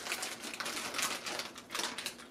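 Crinkly plastic packet crackling as it is pulled open and handled, a dense run of small irregular crackles.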